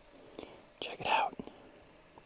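A person's whispered, breathy voice, a short burst about a second in, with a few soft clicks around it.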